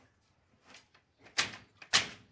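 Traditional wooden hand loom weaving silk: two sharp wooden clacks about half a second apart as the beater packs the weft into the cloth, with a softer knock about a second earlier.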